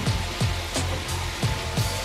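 Potato strips frying in hot oil in a skillet, a steady sizzle, being turned with tongs. Background music with a steady kick-drum beat plays over it.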